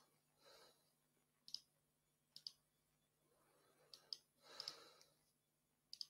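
Near silence broken by a handful of faint, short clicks, two of them in quick pairs, and two soft breaths, one about half a second in and a longer one around four to five seconds in.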